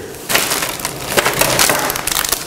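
Hands rummaging through small hard objects while searching for a hair clipper guard: an irregular, dense clatter and rattle that starts a moment in.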